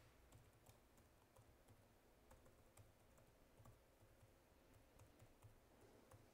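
Near silence: faint room tone with soft, irregular clicks, a few per second.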